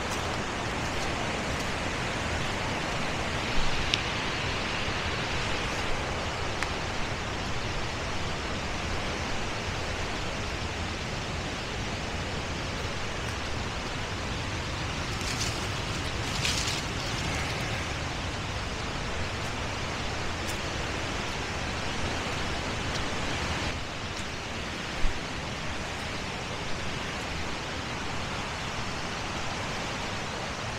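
Steady rush of water pouring through a crumbling old dam and its channel, with a few light footsteps on dry leaf litter and one sharp knock late on.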